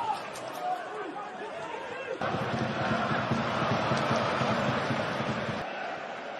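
Football stadium crowd noise from a match broadcast: a mass of voices that comes in suddenly about two seconds in, holds steady, and drops away near the end.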